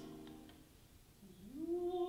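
Live chamber music-drama performance: a sung note fades out, then after a short lull a single note slides upward about an octave and is held steady.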